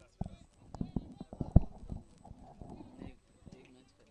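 A series of faint, irregular knocks and taps, with one louder knock about one and a half seconds in.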